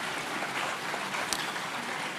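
Audience applauding: a steady, fairly quiet patter of clapping.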